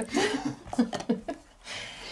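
People laughing in short bursts that die away after about a second and a half, followed by a soft hiss near the end.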